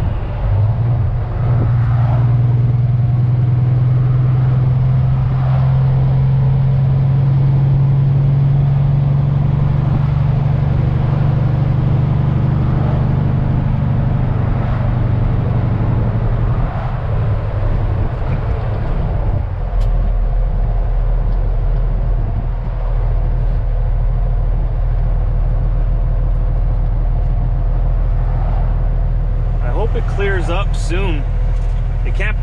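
Semi truck's diesel engine droning steadily, heard inside the cab while driving. About halfway through, the engine note drops to a lower hum and stays there.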